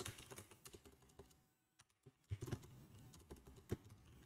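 Faint typing on a computer keyboard: scattered keystrokes with a short pause in the middle.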